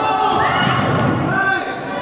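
Basketball bouncing on a hardwood gym floor amid the calls and chatter of players and spectators, echoing in a large hall.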